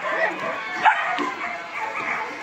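Several puppies yipping and whimpering in short, scattered calls.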